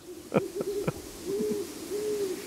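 A run of soft, low, owl-like hoots, with one arched hoot about halfway through and another at the end, over a few faint taps in the first second.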